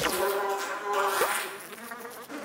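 Cartoon sound effect of a bee buzzing in flight, a steady buzz that starts suddenly.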